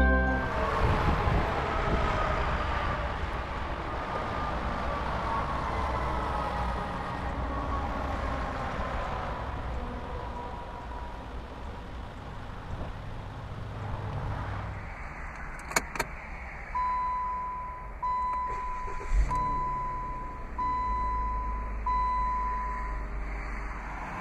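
Retractable power hardtop of a 2012 Chrysler 200S folding, played at double speed: a mechanical whine that falls slowly in pitch for about fifteen seconds. Then a click and five evenly spaced beeps, each about a second long.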